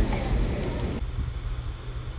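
A few faint clicks and a light jingle that cut off suddenly about a second in, leaving a low steady hum.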